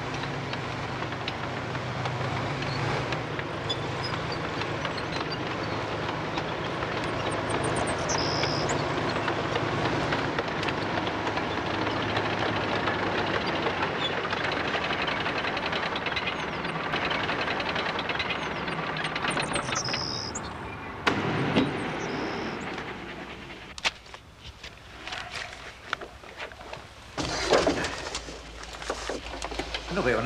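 Tank running steadily with a low engine hum. The sound falls away a little over two-thirds of the way through, leaving a few scattered sharp knocks.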